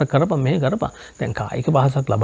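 A man speaking Sinhala close to a clip-on microphone, with a short pause about a second in, over a faint steady high-pitched tone in the background.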